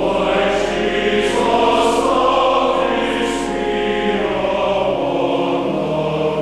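Large church choir singing in parts, holding long chords, with the 's' sounds of the words audible now and then.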